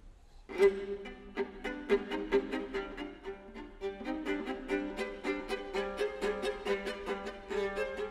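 Solo viola starts about half a second in, playing a quick tune in short bowed notes over a steady low held drone note.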